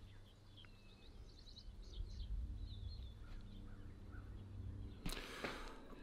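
Faint birds chirping here and there over a low steady hum, with a sharp click near the end.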